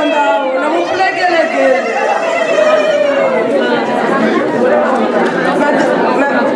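Lively chatter: many voices talking over one another at once.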